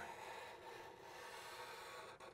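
Faint, steady rubbing of black felt-tip markers drawing lines on paper.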